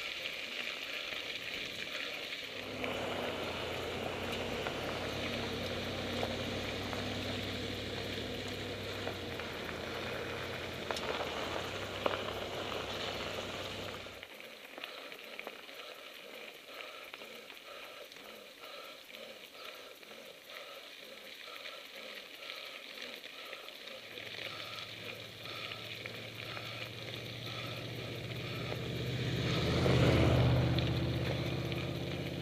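Mountain-bike tyres rolling over a gravel dirt road: a steady crunching hiss. A low hum sits under it for the first half. After an abrupt change about halfway, a faint even ticking comes through, and near the end a low rumble swells to the loudest point.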